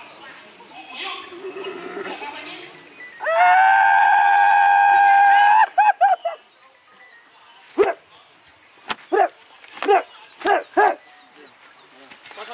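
A shrill human shriek held for about two and a half seconds with a slight waver, breaking off into a few quick short cries. Later comes a string of short yelps, each rising and falling.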